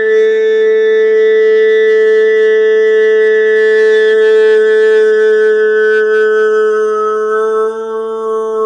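A man's voice in vocal toning, holding one long, steady sung note, with a brief break near the end.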